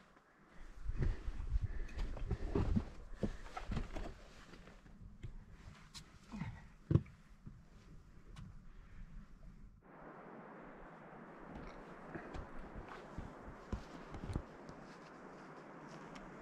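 Footsteps and boots scuffing and knocking on rock during a scramble, with irregular clicks and low rumbles and one sharp click about seven seconds in. About ten seconds in the sound cuts to a steady rushing hiss with faint ticks.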